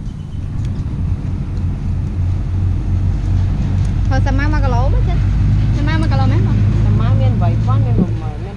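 A motor vehicle's engine running close by: a steady low rumble that grows louder through the middle, with people talking over it from about halfway in.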